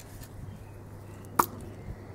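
A single sharp knock, like a light blow on wood, about one and a half seconds in, over a quiet background.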